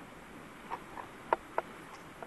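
Four short, sharp clicks or taps in quick, uneven succession a little under a second in, the third the loudest, over a faint steady outdoor hiss.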